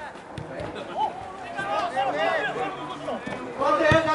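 Voices shouting and calling out in the open air of a football pitch, several short calls rising and falling in pitch, with a single sharp thump near the end.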